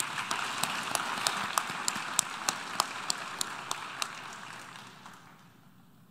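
Audience applause, with one person's claps close to the microphone standing out about three times a second; it dies away over the last second or two.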